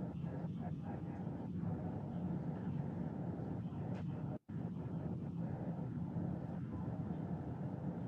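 Audio of a video played through classroom speakers: a steady low rumble with faint, indistinct speech in it. The sound cuts out for an instant a little past halfway.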